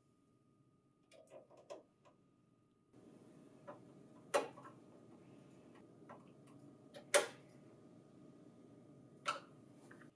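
Light clicks of a metal mounting bracket and a screwdriver against a printer's steel frame as the bracket is fitted and screwed in: a few soft clicks at first, then three sharper clicks a few seconds apart.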